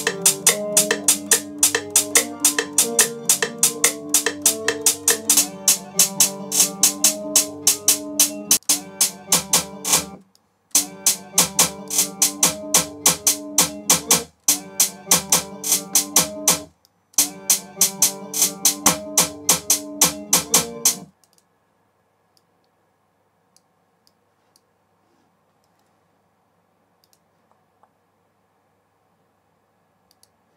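A drill beat playing back from the DAW: a melodic guitar loop under a fast, even run of counter-snare hits. Playback stops and restarts a few times, then cuts off about 21 seconds in, leaving only a few faint mouse clicks.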